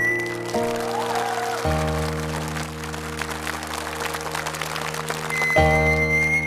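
Instrumental backing music with audience applause through most of it. A bowed musical saw's high, sustained tone ends just after the start and comes back in near the end.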